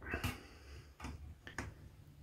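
A few faint, sparse clicks and small metallic taps as a screwdriver works at the parts of a triple gas burner being stripped down.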